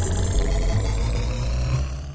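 Electronic synthesizer outro music with a deep bass, starting to fade out near the end.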